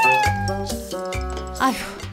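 A cat's meow: one drawn-out call at the start, sliding slightly down in pitch, over background music.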